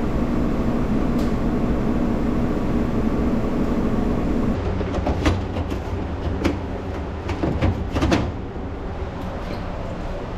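Commercial front-load washer in its spin cycle, running with a steady hum. About four and a half seconds in, the sound changes to a lower rumble of laundry machines, with several sharp clicks and knocks as a plastic dryer lint screen is pulled out and handled and a dryer door is opened.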